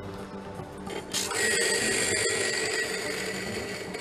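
Electric coffee grinder switching on about a second in and grinding coffee beans, a steady motor whirr with a high whine.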